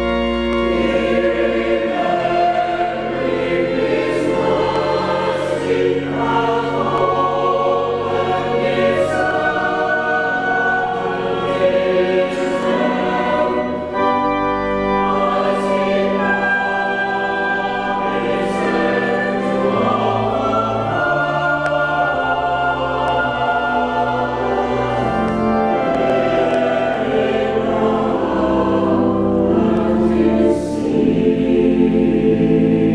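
Church choir singing a sustained choral piece in parts, with organ accompaniment holding a low bass line beneath the voices.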